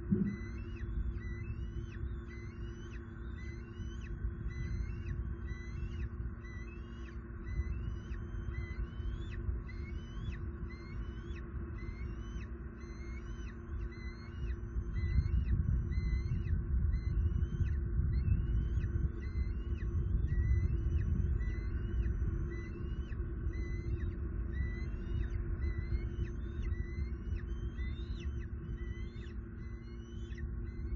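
Outdoor nest-camera ambience: a steady low hum and rumble that swells louder midway, with a faint high chirp repeated evenly about twice a second throughout.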